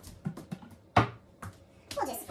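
A few light clicks and one sharp knock about a second in: kitchen items being handled while salt is fetched.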